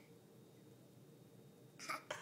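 Quiet room, then near the end one short breathy gasp from a laughing toddler.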